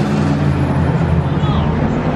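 City street traffic at a busy intersection: a vehicle engine running with a steady low hum under the noise of the street, with passers-by talking.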